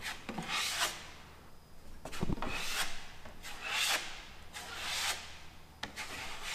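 Steel drywall knife scraping joint compound across drywall over screw heads, in a series of short strokes, about six in six seconds, with a low knock about two seconds in.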